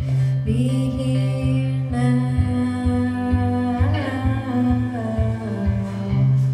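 Live song: a singer holding long, slowly gliding notes with no clear words, over a steadily played acoustic guitar.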